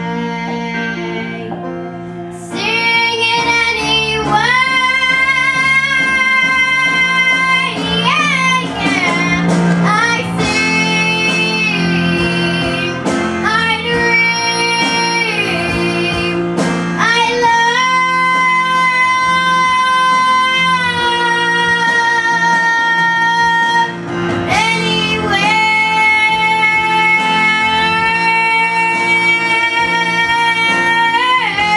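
A young girl singing solo into a handheld microphone over an instrumental backing, holding long sustained notes. The music grows louder about two and a half seconds in.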